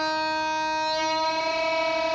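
Electric guitar playing one chord of several notes, held and left to ring steadily.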